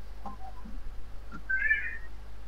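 A short, high-pitched, wavering animal-like call about one and a half seconds in, over a faint steady low hum.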